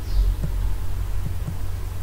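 Steady low electrical hum on a computer microphone line, with a faint pulsing but no other clear event.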